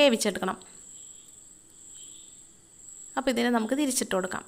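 A woman speaking briefly at the start and again near the end; in between, a faint hiss of a dosa cooking on a hot griddle, over a steady high-pitched tone.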